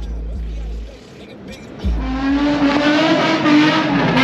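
A car's engine comes in suddenly about halfway through, held at high revs, with spinning tyres squealing on the pavement. Before it, a deep bass beat of music thumps, then drops away.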